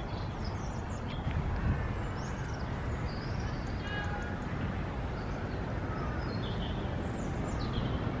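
Outdoor park ambience: several birds chirping and whistling, one harsher call about four seconds in, over a steady low rumble.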